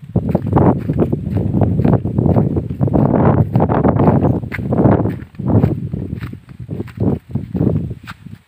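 Walking with a handheld phone on a dirt path: irregular low thuds of footsteps and handling rumble on the microphone, fading out near the end.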